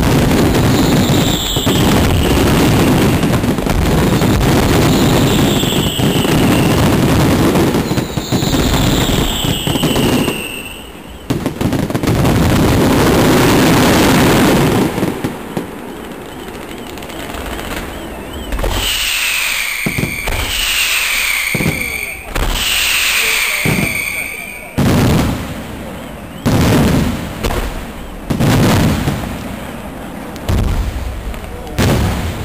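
Fireworks display at close range: a dense, continuous barrage of bangs and crackling that thins out after about fifteen seconds into separate loud bangs near the end, with falling whistles sounding over it several times.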